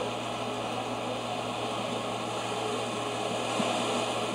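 Steady background hiss with an even low hum underneath, and no distinct event.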